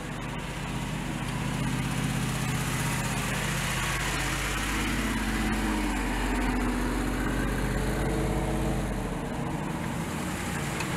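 Jeep Wrangler Rubicon 392 V8 engines running at low, crawling speed on a dirt trail, a steady low rumble with the engine note wavering up and down in the middle as the throttle changes.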